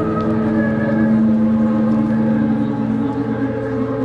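Loud, steady electronic drone of several held low tones played through a concert PA system, with one tone moving to a new pitch near the end.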